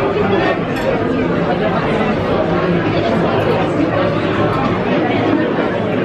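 Steady babble of many diners' voices talking at once in a busy restaurant dining room, with no single voice standing out.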